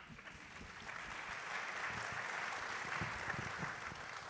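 Audience applauding, building over the first couple of seconds and dying away near the end.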